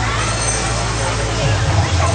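Faint voices of people talking in a crowd over a steady low hum and a background haze of noise. The hum thins out near the end.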